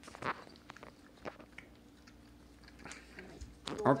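Plastic piping bags of soft icing being squeezed and kneaded by hand, giving scattered small crinkles, clicks and squishes.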